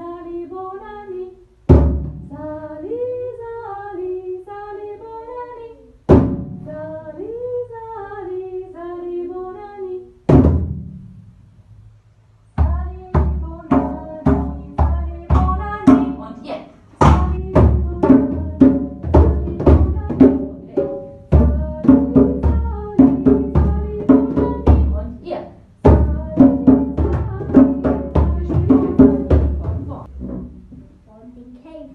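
Djembe drums struck by hand under a sung children's melody: at first only a few single strokes several seconds apart, then, from about halfway, a steady beat of hand strokes on the drums that carries on under the singing.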